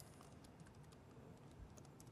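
Faint typing on a computer keyboard: a quick, uneven run of soft key clicks as a command is typed in.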